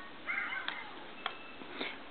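A baby's short vocal sound that rises and falls in pitch, about a quarter second in, followed by two light clicks.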